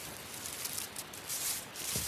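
Dry leaf litter rustling and crackling under a hand working around a mushroom on the forest floor, in a few short scratchy bursts.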